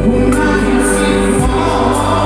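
Live concert music with singing, amplified over a stadium sound system: a slow song with sustained vocal lines over band accompaniment.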